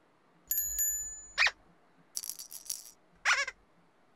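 Whimsical cartoon sound effects: a bright chime over a low thud about half a second in, a short squeaky glide, a run of rattling shakes, and another squeaky glide near the end.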